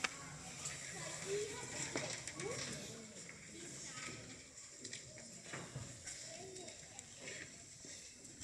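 A quiet pause in a live stage play: faint, indistinct voices murmuring in a hall over steady hiss, with a few soft knocks.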